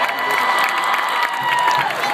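Stadium crowd cheering and applauding, with one long held whoop from a nearby fan that drops away near the end.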